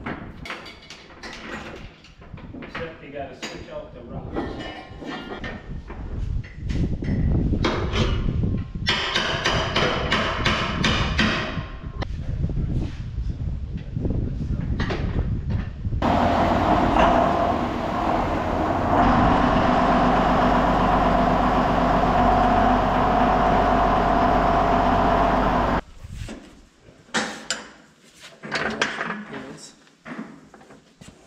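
Irregular clanks and knocks of heavy tractor dual wheels being rolled and fitted. About halfway through, a John Deere tractor's diesel engine runs steadily for about ten seconds and stops abruptly, followed by more scattered knocks.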